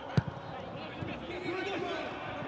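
A football kicked once, a sharp thud just after the start, with faint shouts of players carrying across an empty stadium.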